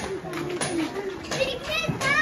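Children's voices while playing: chatter and calls, with a high-pitched child's cry near the end.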